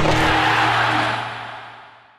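Logo sting at the end of a video: a music hit that rings on as a bright wash over a low held note, fading out over about two seconds.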